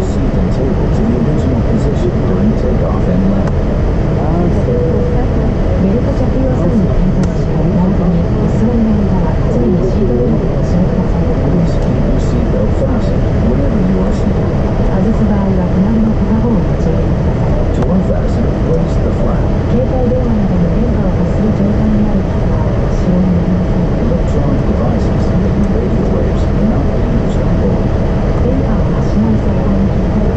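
Steady cabin noise inside a Boeing 787 airliner as it starts to move from the gate: a constant low rumble with a steady hum, with passengers' voices talking over it.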